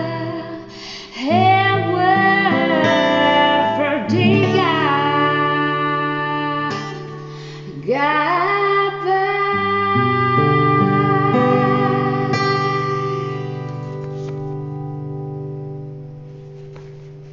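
Female voice singing long, sliding notes over fingerpicked acoustic guitar, as the closing bars of a slow folk song. The music fades out over the last few seconds.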